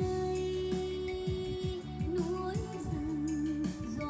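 A song with a singing voice over a steady bass line, played back through a Yamaha A501 integrated amplifier and loudspeakers. The voice holds one long note, then sings a wavering one near the end.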